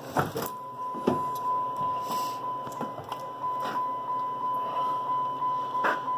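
A steady, high electronic warning tone from the 2006 Dodge Grand Caravan's dash, starting about half a second in, with a few light clicks and knocks of handling in the driver's area.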